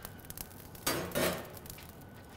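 Hot lump charcoal shifting and clinking on the steel grate of an offset smoker's firebox, with a short scraping clatter about a second in.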